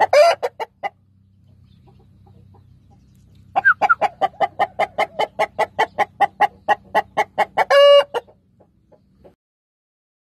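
Indian game chicken clucking in fast, even runs of about five clucks a second: a short run at the start and a longer one from a few seconds in. The longer run ends in a louder, drawn-out call near the end. A faint low hum sits underneath.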